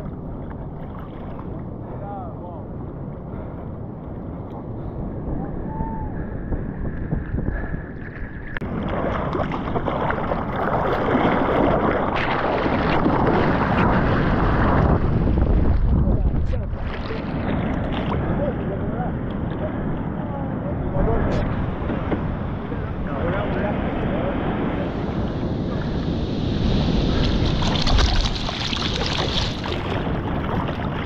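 Sea water sloshing and splashing at a water-level camera beside a surfboard, with wind on the microphone; it grows louder about nine seconds in and stays loud for several seconds.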